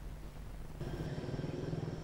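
Faint room tone, then from about a second in a steady low engine rumble of a car coming up the road, with a thin steady high tone above it.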